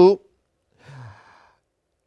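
The end of a man's spoken word, then a single short, faint breath, a sigh-like exhale with a slight low hum, about a second in.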